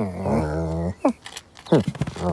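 A cartoon cat vocalising: a low growl held for about a second, then short calls that fall in pitch near the end.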